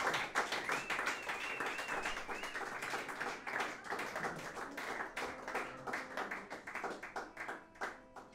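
Applause from a small audience, hand claps that thin out and die away near the end.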